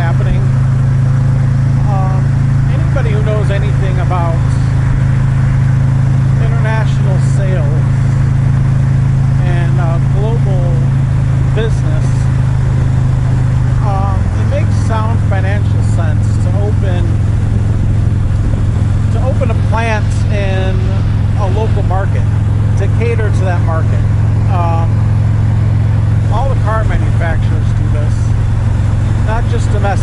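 Harley-Davidson touring motorcycle running steadily at highway speed: a loud, steady low drone of engine and wind that drops slightly in pitch about halfway through, with a man talking over it.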